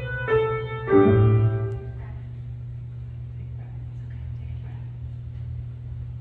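Piano chords struck twice in the first second and left to ring, dying away by about two seconds in, then a pause filled only by a low steady hum.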